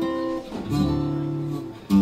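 Two Ken Parker archtop guitars played as a duet, ringing chords that change about half a second in and again with a fresh strum near the end.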